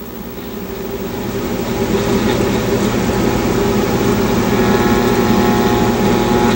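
1960 Philco tube AM radio's speaker giving out steady static and buzzing hum between stations, slowly growing louder.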